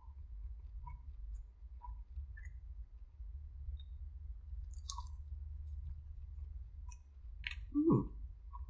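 Faint mouth clicks and smacks of someone biting into and chewing a sauced chicken wing, over a low steady hum. Near the end there is a short low vocal hum, the loudest sound in the stretch.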